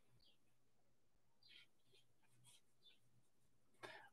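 Near silence, with a few faint soft strokes of a paintbrush on watercolour paper.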